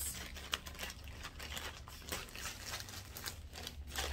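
Thin plastic Amazon poly mailer bag crinkling and rustling in irregular small crackles as it is handled and opened, with a sharper click about half a second in.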